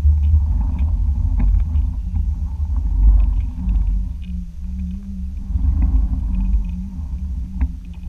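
Underwater noise from a submerged microphone: a low rumble that swells and eases, with a wavering hum and a few faint clicks.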